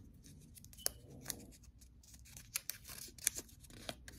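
Faint, scattered crinkles and small clicks of a slip of paper being handled and opened by hand.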